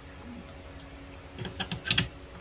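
A quick run of plastic clicks and knocks starting about one and a half seconds in, as a power adapter plug is pushed into a power strip socket, over a faint steady hum.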